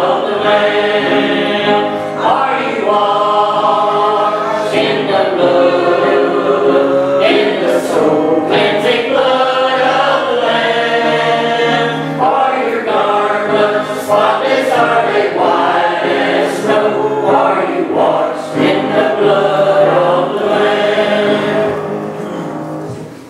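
Small church choir of men and women singing a hymn together, several voices holding long notes in a slow tune.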